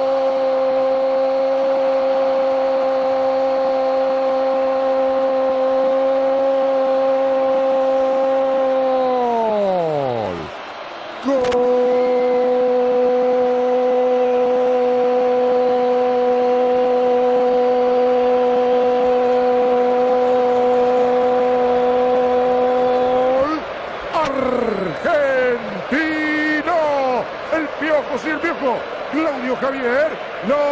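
Spanish-language football commentator's drawn-out goal call: a long 'gooool' held on one steady pitch for about ten seconds that slides down and breaks off, then after a brief gap a second held 'gol' of about twelve seconds, giving way near the end to rapid excited commentary.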